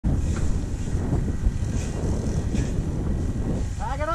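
Wind buffeting a small action-camera microphone in a steady low rumble. Near the end, a person's short call rises and falls in pitch.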